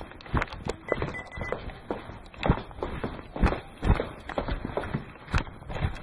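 Camera handling noise: irregular knocks and bumps, roughly two a second, with rubbing, as the camera is carried and moved about.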